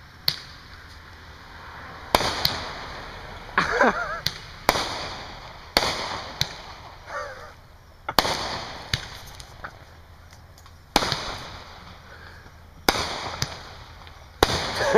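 Consumer fireworks going off: about ten sharp bangs at irregular intervals, one to three seconds apart, each trailing off in an echo.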